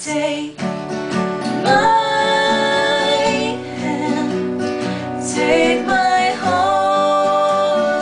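Two women singing in harmony, holding long notes, over two acoustic guitars.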